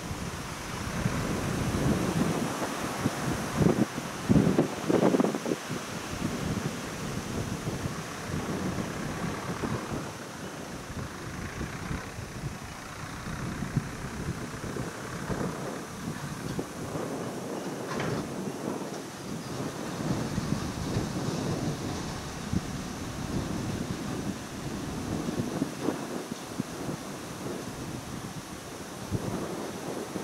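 Wind buffeting the camera microphone in uneven gusts, a low rumble with a hiss above it, strongest about four to five seconds in.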